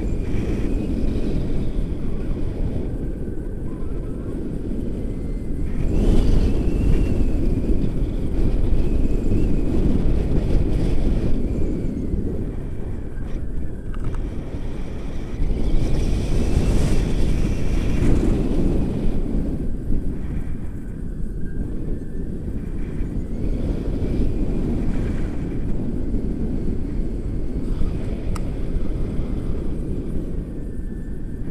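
Wind rushing over the microphone of a selfie-stick camera on a tandem paraglider in flight: a steady low rush that swells louder twice, about six seconds in and again past the midpoint.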